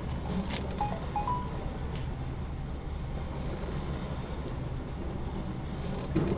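Steady low hum with a background rumble from the sewer inspection camera rig as the camera is drawn back up the pipe, with a few faint clicks and a couple of short high tones about a second in.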